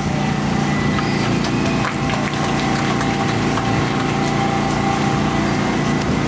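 An engine idling steadily, a low even hum with a few faint knocks over it.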